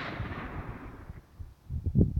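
The rolling echo of a .22-250 rifle shot fading away over about a second, the shot itself having gone off just before. A few low thumps follow near the end.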